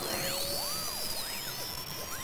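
Electronic logo sting: several overlapping tones that each sweep up and then back down, over a steady high tone, starting suddenly.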